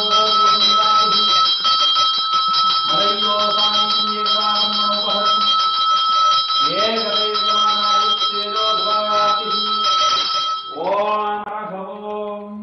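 A hand bell rung rapidly and without a break, its ringing steady under a man's chanted phrases; the bell stops near the end. It is a temple puja bell, rung at the lamp offering.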